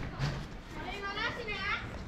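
A child's high-pitched voice calling out for about a second, starting a little under a second in.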